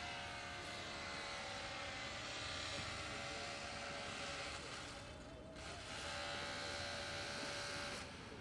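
A steady engine drone with a hum of several steady pitches over a noisy rush; it dips briefly about five seconds in, then picks up again.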